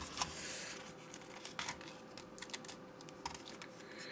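Faint, irregular small plastic clicks, with a short rustle just after the start, from hands handling a Logitech M215 wireless mouse while trying to open its battery cover.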